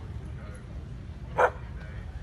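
A dog gives a single short bark about one and a half seconds in, over a steady low rumble.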